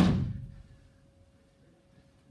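A single sudden loud deep boom that dies away over about half a second, followed by a faint steady hum.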